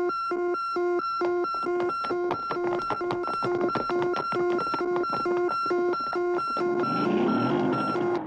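Cartoon emergency alarm beeping in a fast, even rhythm, about two and a half beeps a second, sounding the call-out for the police squad. Short clicks rattle underneath, and a rushing noise joins near the end.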